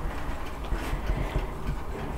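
Faint rustling of large paper photo sheets being handled, over a steady low rumble.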